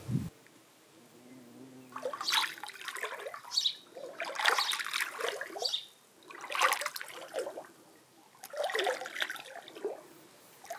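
Water splashing and swishing around a bare foot moved through a stone pool, in irregular surges every second or two after a brief thump at the start.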